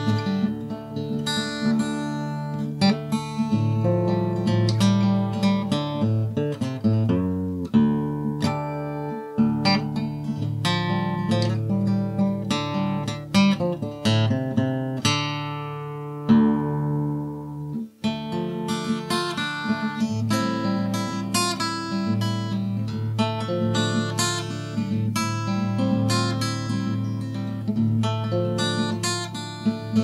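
Solo acoustic guitar in DADGAD open tuning, playing a plucked melody over ringing bass strings. About halfway through, a chord is left to ring and die away, there is a brief break, and then the playing picks up again.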